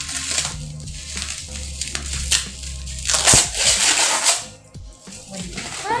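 Plastic bubble-wrap packaging being crinkled and pulled at to tear it open. The crackling rustle comes in bursts and is loudest about three to four seconds in.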